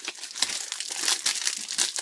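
Foil trading-card pack wrapper being torn open by hand, crinkling with a rapid, irregular crackle.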